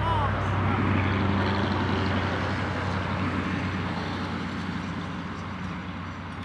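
An engine running at a steady pitch with a low hum, slowly fading away.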